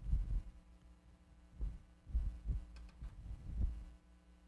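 Soft, irregular low thumps of a handheld microphone being gripped and shifted in the hand, over a faint steady electrical hum.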